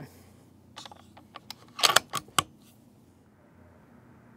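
Sako S20 Hunter bolt-action rifle being handled, its bolt worked to chamber a round: a short run of sharp metallic clicks and clacks, the loudest three close together about two seconds in.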